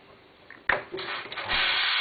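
A sharp knock and some clatter, then about halfway through a loud, steady hiss of steam as the steam wand of a Sunbeam EM6910 espresso machine is purged after wiping.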